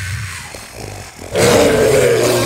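A low rumble, then about one and a half seconds in a cartoon character's loud, wordless yell, held and falling slightly in pitch.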